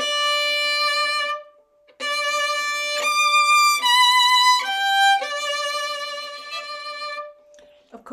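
Violin played with the bow, with vibrato: a long held note that stops just over a second in, then after a short pause another held note, a quick run of notes stepping down in pitch, and a long held note that fades out near the end. The loudest notes come in the middle of the run.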